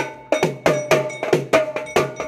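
Set of metal-shelled drums struck rapidly with sticks in a steady, driving rhythm of about five or six strokes a second, each stroke ringing with a short clear tone. The beat breaks for a moment just after the start, then picks up again.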